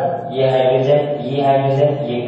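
A man's voice drawing out long syllables at a steady pitch, chant-like rather than clear words.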